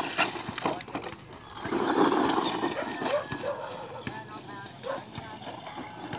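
Indistinct voices of people talking, with a louder rushing noise about two seconds in.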